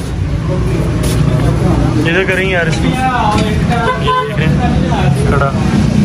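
Street traffic: a steady hum of vehicle engines, with people talking over it.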